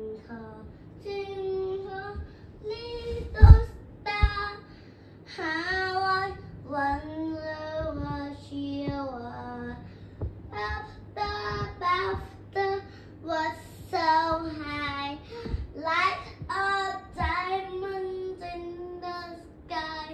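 A child singing a meandering tune in held, sliding notes, with a loud thump about three and a half seconds in and smaller knocks after it.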